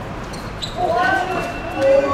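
Footballers calling out to each other across an outdoor hard court, starting a little over half a second in. Before that there are a couple of sharp knocks of the ball on the hard surface.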